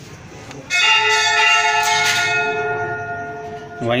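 Temple bell struck about a second in, its metallic ring of several overlapping tones holding and then slowly fading over the next few seconds.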